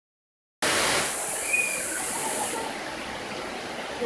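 Heavy rain pouring steadily, starting about half a second in. It is louder and hissier for the first two seconds, then settles to a steady lower hiss.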